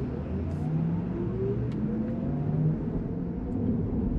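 Porsche Taycan electric drivetrain heard from inside the cabin with the artificial Electric Sport Sound switched off: a steady low road-and-tyre rumble under a faint motor whine with a few thin tones gliding slowly upward, like a suburban train.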